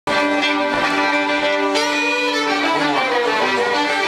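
Four fiddles bowing a tune together in long, sustained notes, changing notes a little under halfway through.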